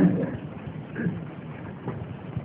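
A man's voice gives one short syllable at the very start and a faint sound about a second in. Otherwise there is only the steady hiss of an old, low-fidelity recording.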